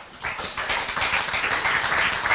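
Audience applauding: a steady patter of many hands that starts a moment in and carries on through.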